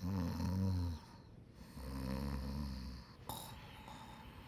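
A sleeping bulldog snoring: two long, low snores, the second after a short pause, with a brief click near the end.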